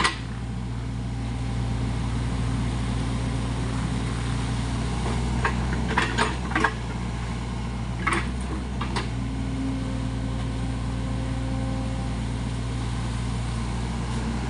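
SANY SY55C mini excavator's diesel engine running steadily under work. A few short sharp knocks about six seconds in and again around eight to nine seconds in, as the bucket works through mud and brush.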